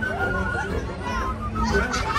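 Crowd of fairgoers talking, with children's voices calling out among the chatter, over a low steady rumble.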